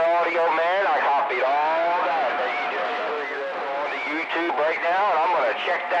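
A voice coming in over a CB radio, thin and tinny with the low and high ends cut off, talking without a break.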